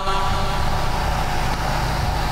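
Steady background noise, a low rumble with a hiss over it, and no voice.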